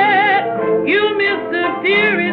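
Old 1927 jazz recording: a small band of cornet, clarinet, trombone, piano and banjo backing a blues singer. Long held notes waver with wide vibrato, and new notes scoop up into pitch about a second in and near the end.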